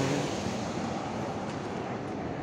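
Steady outdoor street noise: road traffic with wind on the microphone.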